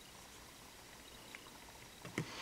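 Near silence: room tone, with one faint tick about two-thirds of the way through.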